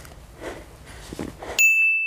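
A single bright chime sound effect, edited in on the cut to a title card, strikes suddenly near the end and rings on as one steady tone, slowly fading. Before it, faint rustling and outdoor background.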